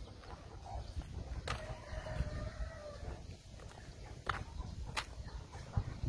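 A rooster crowing once, a single held call of about a second and a half starting about a second and a half in, over a low rumble. A few sharp clicks come later.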